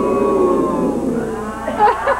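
Latex twisting balloons squeaking as they rub together while a balloon hat is pressed onto a man's head: long wavering squeaks, with a short sharper squeak near the end.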